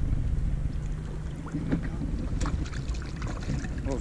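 Wind rumbling on the microphone over water by a boat's hull, with a faint steady hum and a few short splashes as a fish is let go over the side.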